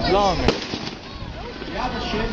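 A single sharp bang about half a second in, a model warship's miniature cannon firing, followed by a couple of fainter cracks. A voice exclaims just before the bang.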